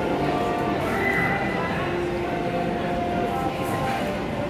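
A woman laughing over the steady chatter of a busy hall.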